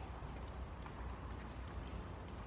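Quiet room tone inside a church: a steady low hum with faint, irregular light clicks and taps.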